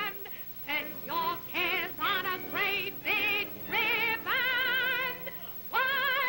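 A woman singing a jaunty show tune in a run of short notes, with a longer held note past the middle, all with a wide vibrato, from an early-1930s film soundtrack.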